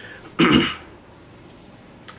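A man's single short, loud throat-clearing sound, about half a second in.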